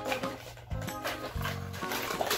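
A children's electronic sound toy playing a short tune with a recorded animal call, its low notes repeating in short bursts.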